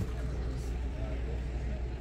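Outdoor background: a steady low rumble with faint voices in the distance.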